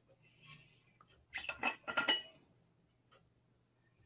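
A drink bottle being handled and opened: a quick cluster of faint clinks and knocks, with short ringing, between about one and two seconds in.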